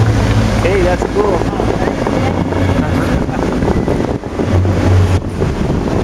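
Water jets of the Bellagio fountain rushing and splashing in a loud, steady wash, with wind buffeting the microphone.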